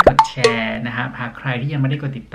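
A short cartoon-style pop sound effect at the very start, a quick glide in pitch with a couple of sharp clicks, followed by a man talking.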